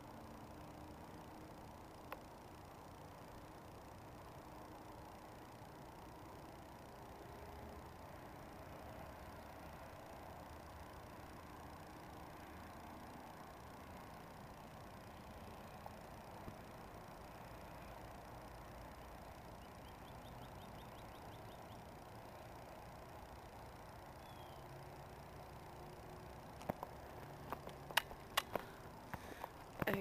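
Faint steady outdoor background noise with no distinct source. Near the end come a few sharp clicks and knocks from the camera being handled.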